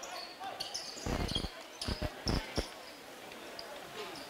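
A basketball being dribbled on a hardwood gym floor: about five bounces at uneven spacing between about one and three seconds in, over faint gymnasium background noise.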